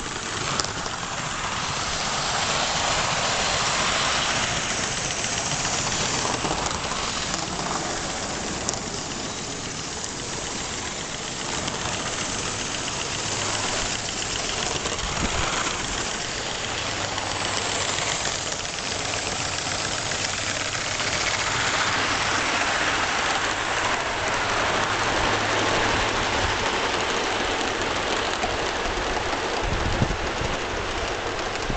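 Aster Gauge One live-steam 'Battle of Britain' class model locomotive running with a 17-coach train: a steady rushing, rattling running noise that swells and eases as the train moves past.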